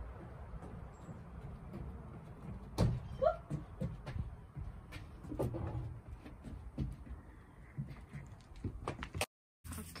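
Wooden pallet-board garden box frame knocking and bumping as it is carried and handled, with several sharp knocks (the loudest about three seconds in) over a steady low rumble.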